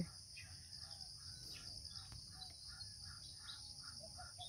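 Faint, steady outdoor chorus of insects, crickets among them, with scattered short bird chirps.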